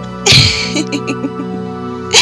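A sinister laugh: a sharp breathy burst, then a quick run of short "ha" notes, over steady background music.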